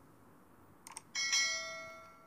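Subscribe-button sound effect: a quick double click about a second in, then a bell chime that rings out and fades away slowly.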